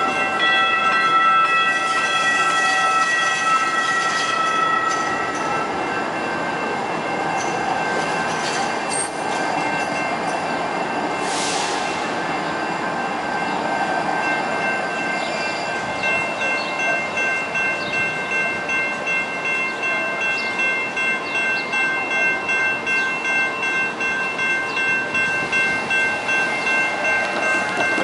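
A LYNX light-rail train running through a street grade crossing, its wheels rumbling past. For about the first five seconds a held multi-note horn tone sounds. From about halfway through, the crossing's warning bell rings in a steady pulse, about twice a second.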